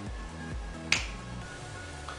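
Background music with a steady low beat, and one sharp finger snap about a second in.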